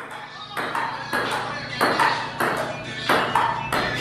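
Table tennis ball clicking in a steady rally, struck by paddles and bouncing on the table, about six hits at a regular pace.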